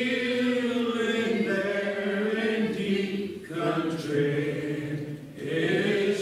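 Group of voices singing a slow hymn in long, drawn-out held notes, with short breaks between phrases about three and a half and five seconds in.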